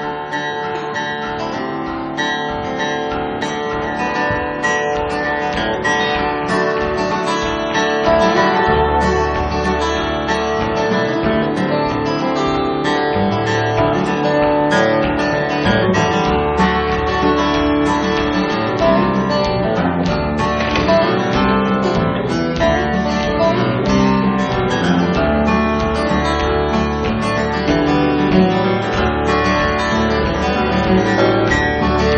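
Guitar trio playing an instrumental piece: steel-string acoustic guitars picking and strumming together, with a low bass line coming in about nine seconds in.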